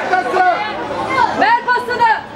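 Men's voices shouting and calling out across the pitch during play, with one long shouted call near the end.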